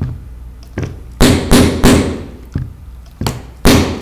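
Wooden mallet knocking a wooden dowel into a wooden rubber band racer body to drive it flush: a light tap, then three quick blows a little over a second in, and two more near the end.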